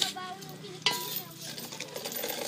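Soil and gravel being scraped during hand digging, with two sharp knocks, one at the start and a louder one about a second in.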